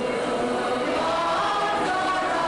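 Mixed choir of men's, women's and children's voices singing together, holding sustained notes.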